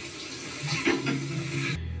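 Shower water running steadily in a TV drama's soundtrack, with a brief low voice over it; the water cuts off suddenly near the end as the scene changes.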